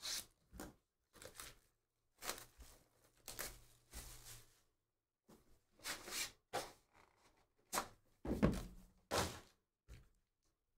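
Sealed cardboard trading-card hobby boxes being handled and opened by hand: a string of short rustling, tearing and scraping noises of wrapper and cardboard, with dull thumps as boxes are set down on the padded mat, the loudest near the end.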